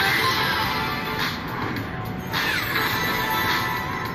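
Crazy Money Gold slot machine playing its free-spin bonus music and electronic reel sound effects as the reels spin and coins land, with a swooping tone a little past the middle.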